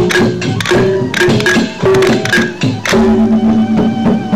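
Sasak gendang beleq ensemble playing: large barrel drums and metal percussion struck in quick, dense strokes over held pitched notes that shift in pitch, with a new lower note taking over about three seconds in.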